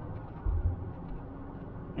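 Low, steady engine and road rumble inside a vehicle's cabin, with a faint steady hum.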